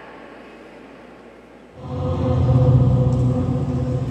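Quiet room tone, then about two seconds in, loud music begins: a sustained chord held steady over a strong low note.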